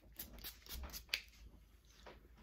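Pump-spray bottle of lavender body mist being spritzed: a few short, faint hisses, the strongest about a second in.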